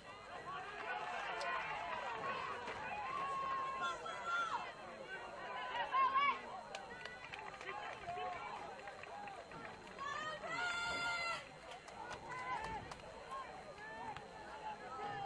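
Players and spectators shouting and calling across the soccer field during open play. The loudest shout comes about six seconds in, and a longer held call comes about ten seconds in.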